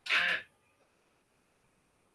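A single short burst of throat noise from a person, about half a second long, at the very start; a faint high steady tone hangs on for a second or so after it.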